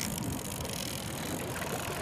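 A boat's outboard motor running steadily at trolling speed, with wind and water noise, and the faint ticking of a fishing reel being wound in as a fish is brought to the boat.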